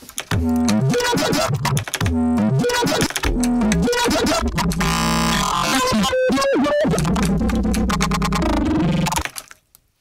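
Playback of a rendered sample made from a man's scream, processed in a DAW into a synth-like bass sound with a rhythmic pulse and gliding pitches; it stops about nine seconds in.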